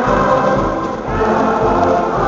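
Wind band with tubas and trombones playing a slow chorale in full, sustained chords, with a brief breath about halfway through before the next chord. The sound carries the reverberation of a large stone church.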